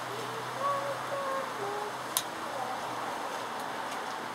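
Faint, muffled voices in the background over a steady hiss, with a single sharp click a little past halfway.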